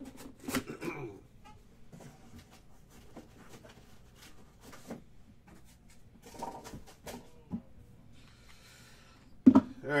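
Hard plastic card holders and a cardboard box being handled on a table: scattered light clicks and taps, then one sharp knock near the end.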